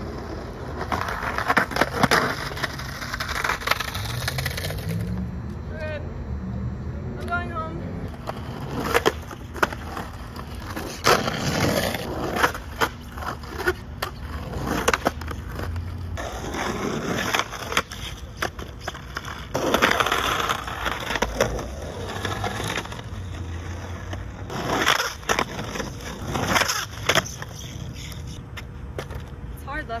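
Skateboard wheels rolling over rough asphalt in several runs a few seconds long, broken by sharp clacks of the board popping, landing and hitting a concrete curb during repeated trick attempts.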